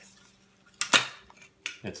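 JBL 38 Special speargun being loaded by hand: the metal end of the rubber band snaps into a notch on the spear shaft with two sharp metallic clicks about a second in and a lighter click just after. The gun is then cocked.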